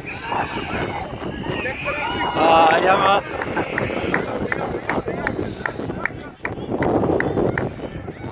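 Voices calling and shouting along the sideline of a football pitch, with one loud shout about two and a half seconds in. From about halfway, close footsteps of someone walking along the sideline, about two or three steps a second.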